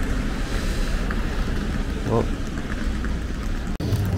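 Steady outdoor street noise with a low rumble of wind on the microphone and one brief voice sound about two seconds in. It cuts off suddenly just before the end.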